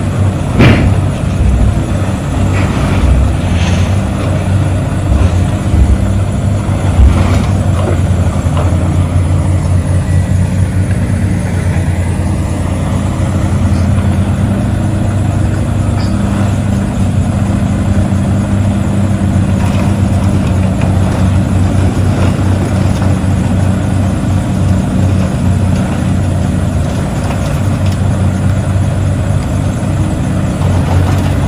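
Heavy diesel machinery running steadily while a grapple loader drops scrap metal into an end dump trailer. Sharp metal clanks and crashes come several times in the first eight seconds or so, over the steady engine sound.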